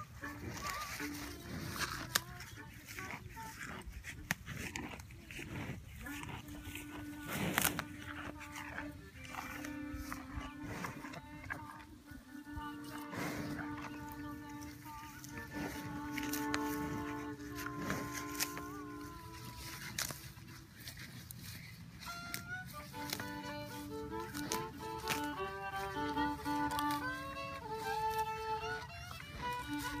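Solo fiddle playing: long, slow held notes from about six seconds in, then a quicker run of notes near the end. Scattered crunching clicks come from cows tearing and chewing grass right beside the microphone.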